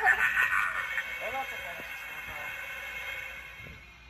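A talking animatronic scarecrow's loudspeaker track: a low voice-like sound in the first second or so, which fades away. A quieter, steady background remains after it.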